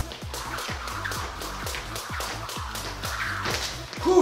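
A jump rope whipping round quickly and ticking against the floor in an even, rapid rhythm as the jumper works through double unders into a triple under, over electronic background music.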